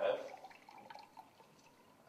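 A man's voice ending a word, then a quiet pause of room tone with a few faint, soft ticks.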